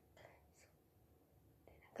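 Near silence: a faint breathy sound from a young woman about a quarter second in, then her voice starting up again near the end.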